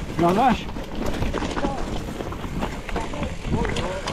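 Mountain bike rolling over a dirt trail: tyre noise and scattered rattles and clicks from the bike, with wind on the helmet-camera microphone.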